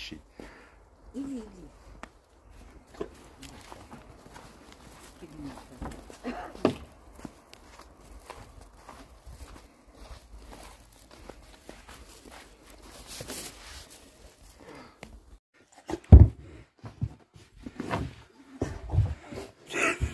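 Quiet footsteps in snow with a rottweiler moving about. Near the end come a few heavy thumps as a rottweiler flops down and rolls on a carpeted floor; the first thump is the loudest sound.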